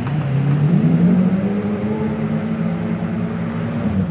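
A drift car's engine at high revs: the revs climb about a second in, then are held steady as the car slides sideways through a drift.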